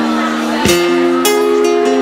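Acoustic guitar playing an instrumental intro: chords left ringing, with a new chord strummed about a third of the way in and further notes picked after it.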